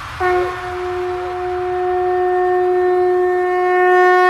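A single long horn-like blown note, a sample in an EDM DJ mix, starting a fraction of a second in and held at one pitch without a break, slowly growing louder.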